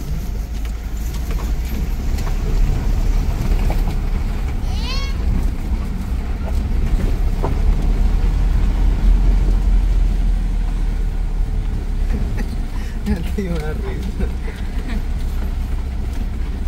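Car cabin rumble from driving slowly over a rough dirt road: a steady, deep low-end drone that swells slightly mid-way.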